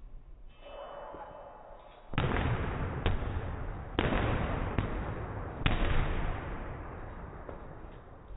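Boxing gloves hitting focus mitts during pad work: about five sharp smacks roughly a second apart, starting about two seconds in, over a loud rush of noise that fades after the last hit.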